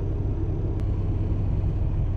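Semi truck's diesel engine idling steadily in neutral at a standstill, a constant low rumble heard from inside the cab.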